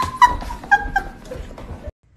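A dog giving about four short, high whimpering yips in quick succession, with light clicks and knocks in between; the sound cuts off just before the end.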